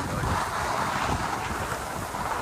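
Wind buffeting the microphone, with a steady hiss of skis gliding over packed snow.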